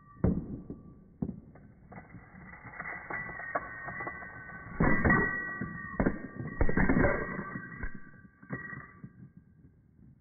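US coins, pennies and quarters among them, dropping one after another onto a flat surface: a run of clinks with ringing as they bounce, spin on edge and settle. The ringing stops about nine seconds in, once the coins lie flat.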